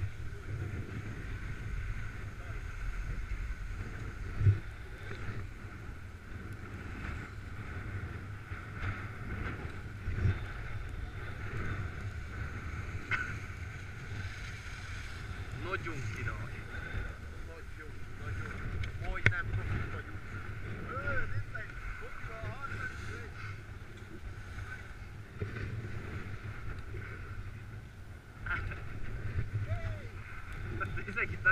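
Skis sliding and scraping over packed snow with wind rushing over a helmet-mounted microphone, broken by a few sharp knocks, with faint voices in the background.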